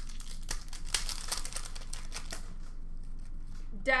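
Foil wrapper of an Upper Deck hockey card pack crinkling and tearing as it is handled and ripped open, with many small crackles in the first two seconds or so, quieter after that.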